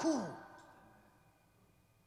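A man's voice trailing off at the end of a spoken phrase with a falling, breathy tail that fades out within the first half second. Then a pause of quiet room tone with a faint steady hum.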